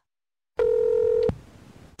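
A single electronic beep: one steady mid-pitched tone about three quarters of a second long that starts about half a second in and cuts off abruptly, leaving faint hiss.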